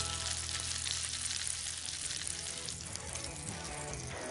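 Peanut-and-chilli-crusted red mullet fillets sizzling in hot olive oil in a frying pan, the gas off but the oil still crackling, over quiet background music.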